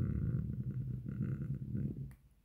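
A man's drawn-out hesitation "euh" sinking into a low, creaky hum for about two seconds, breaking off at the end.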